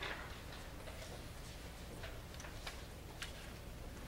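A few light, irregularly spaced clicks and taps over a low steady room hum.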